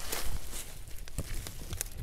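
Dry leaf litter and twigs rustling and crackling underfoot and against the body on a forest floor, with scattered small clicks.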